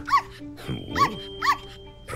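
Puppies yipping: three short, high yips, one at the start, one about a second in and one half a second later, over soft background music.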